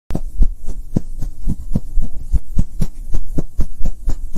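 Logo-intro sound effect: a loud, deep pulse repeating evenly about four times a second.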